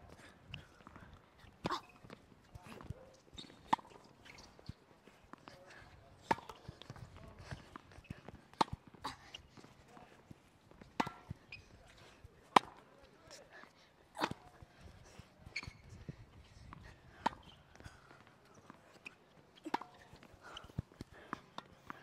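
Tennis balls being hit back and forth on a hard court: sharp pops of racket strikes and ball bounces at irregular spacing, roughly one every second or two, the loudest about halfway through.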